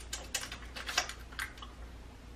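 A handful of light, irregular taps and clicks: fingers or nails tapping on a smartphone screen.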